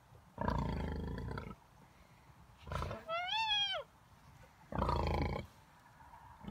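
Pigs grunting: a long grunt just after the start, a short one before the middle and another about five seconds in, with a short high squeal rising and then falling in pitch between them.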